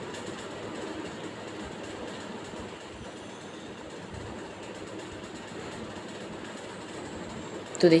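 Tomato-onion masala gravy simmering in a kadai on a gas flame: a soft, steady sizzle and bubble with no distinct knocks.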